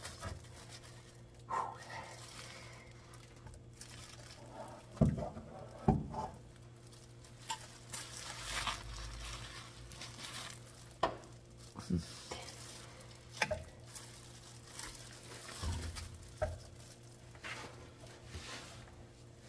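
Scattered sharp clicks and knocks from a caulking gun and tools handled while seam sealer is laid on the underside of a car's floor pans, with a rustling stretch from a rag or paper being handled about halfway through.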